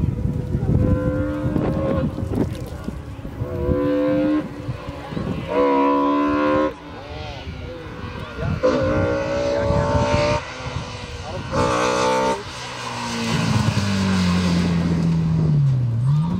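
Slalom race car's engine revving hard in short bursts between the cones, each note held briefly and then cut off sharply as the throttle is lifted. Near the end a lower note falls steadily as the car slows into a corner, then begins to rise again.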